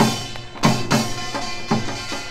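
Seated samulnori percussion: kkwaenggwari small gong and janggu hourglass drum struck together in a steady beat of about two heavy strokes a second, the metal ringing on between strokes.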